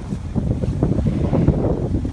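Wind buffeting the microphone during a snowboard run downhill, with the scrape of the board sliding over groomed snow, an uneven low rumble throughout.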